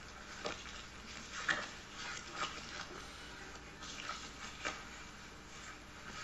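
Faint rustles and light clicks of a card and a box-shaped prop being handled, a few scattered sounds over a low steady hum.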